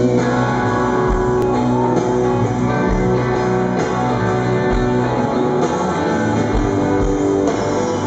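Live rock band playing an instrumental passage led by electric guitar. Sustained guitar notes ring over a low bass note or beat every couple of seconds, at a loud, steady level.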